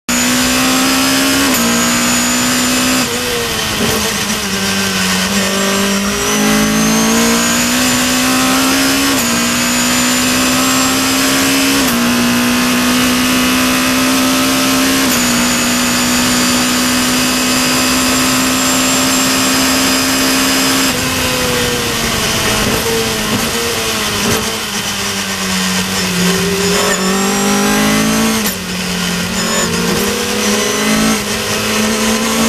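Caterham race car's 2.3 Cosworth engine at racing speed, heard onboard in the open cockpit over a steady hiss of wind and road noise. The engine note climbs through the gears, holds nearly steady on the straight, then falls and swoops up and down in the last third as the car brakes and changes down for a corner.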